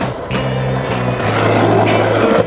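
Soundtrack song with held bass notes, over the rolling noise of skateboard wheels on stone paving.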